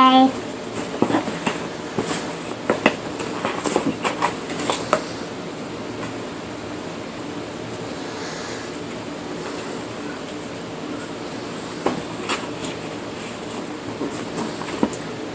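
Light taps and knocks of puzzle pieces being handled and pressed into an inset puzzle board, in a cluster over the first few seconds and again briefly near the end, over a steady low room hum. A toddler's short vocal sound comes right at the start.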